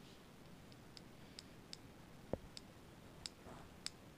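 Light, faint metallic clicks of a small scoop tapping against the metal weighing pan of an AWS Gemini-20 milligram scale as powder is added a little at a time; about eight scattered ticks, with one duller, louder knock a little past the middle.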